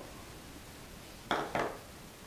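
A tablespoon of salt tipped from a measuring spoon into a stainless steel mixing bowl: two short rattling sounds close together, about a second and a half in.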